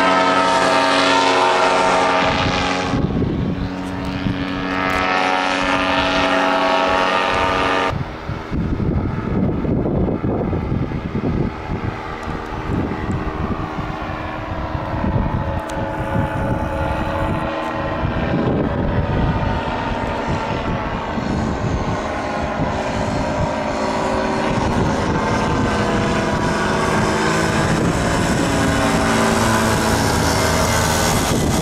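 Paramotor engines and propellers droning overhead as powered paragliders fly past. The several-toned drone runs steadily and shifts slowly in pitch as they move, with a sudden change about eight seconds in.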